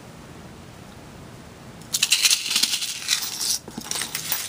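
Metal jewelry chains jangling and clinking as they are handled and moved. The jangling starts about two seconds in and lasts about a second and a half.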